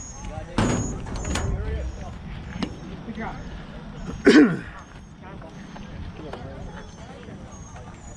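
Voices calling out across a youth baseball field, with one loud yell about four seconds in whose pitch falls away.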